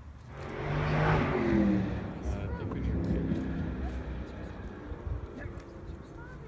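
A car passing by: its noise swells and fades over about two seconds, with its engine pitch falling as it goes past. A low rumble of traffic carries on after it.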